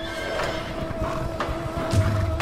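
Horses whinnying and hooves on the ground over a film score with steady held notes.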